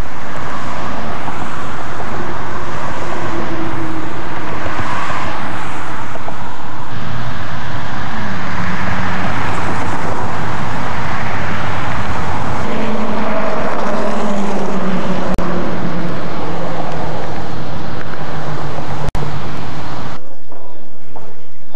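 Steady road traffic noise with the low hum of passing vehicles slowly rising and falling, broken by two brief dropouts near the end.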